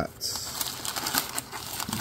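Crumpled brown kraft packing paper rustling and crackling as it is pulled out of a small cardboard shipping box by hand, with many small irregular crackles.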